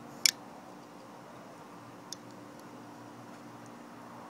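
Titanium lock bar of a Todd Begg Bodega framelock folding knife clicking as it is worked to show its over-travel stop: one sharp click about a quarter second in, then a much fainter click about two seconds later, over a low steady hum.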